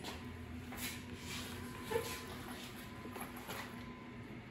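Faint handling noise as a bare cast-iron Ford FE 427 side-oiler engine block is rolled over by hand on an engine stand, with a brief sound about two seconds in. A steady low hum runs underneath.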